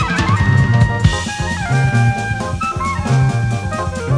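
Instrumental 1970s jazz-rock: a drum kit playing a busy beat under repeating electric bass notes and sustained keyboard lines.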